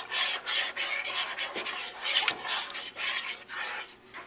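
A spoon stirring couscous, water and seasoning in the pot of a Ninja Cooking System, scraping against the pot in quick, irregular strokes.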